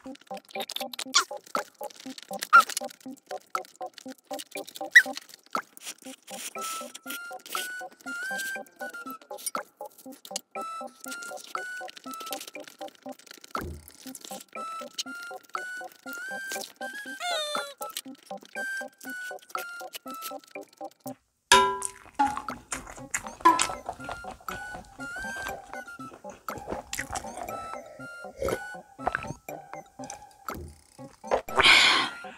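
Light, cute background music: a simple stepping melody over an even pulse, which breaks off briefly about two-thirds of the way through and then goes on. Under it, small clicks of a spoon and chopsticks and eating sounds.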